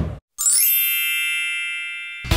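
A TV show's logo sting: a short noisy hit, then a bright shimmering chime about half a second in that rings and slowly fades.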